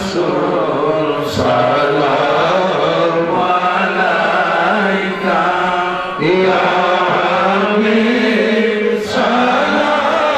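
A man's voice chanting in long, held melodic lines, with short breaks for breath about a second in, about six seconds in and near the end.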